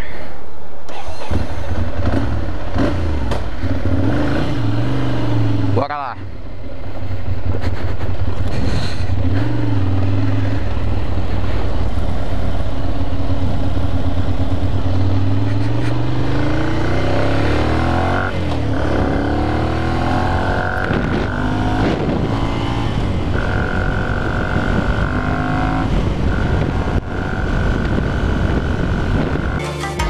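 Ducati Monster 696's air-cooled L-twin engine pulling away and accelerating through the gears, the revs climbing and falling back with each shift, then running on at road speed. A steady high whistle comes and goes in the second half.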